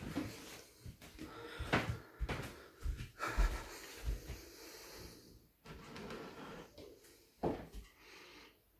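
Handling noise: irregular light knocks, low thumps and rubbing as a phone camera is moved and a hand touches a wooden model diorama, with two sharper knocks, one about two seconds in and one near the end.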